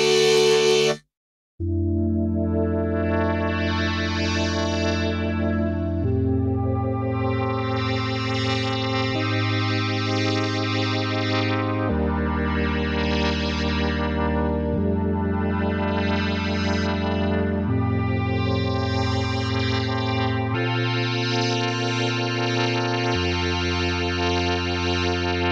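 CRB Uranus 2.0 polyphonic synthesizer playing slow sustained chords that change about every three seconds, each chord swelling brighter and then mellowing again.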